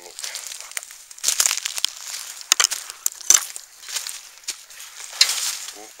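Footsteps crunching through dry leaf litter and twigs, a run of irregular crackling crunches with a sharper snap about three seconds in.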